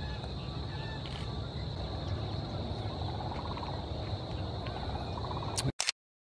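Outdoor ambience of birds chirping and calling over a steady low rumble and a constant high-pitched hum, with a short, rapid rattling trill twice in the second half. A brief sharp crackle near the end, then the sound cuts out.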